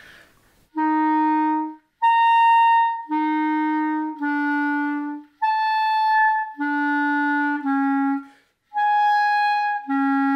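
Clarinet playing a run of separate tongued notes about a second each. A throat-tone F leaps up a twelfth to high C, overblown by changing the voicing alone with no register key. The note goes back down and the pattern repeats on successively lower notes, working down chromatically.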